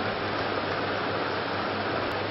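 Steady hiss of background noise with a low, constant hum underneath.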